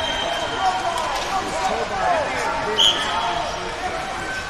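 Busy wrestling-hall sound: overlapping voices of coaches and spectators, with many short squeaks of wrestling shoes on the mat, and a brief high-pitched chirp about three seconds in.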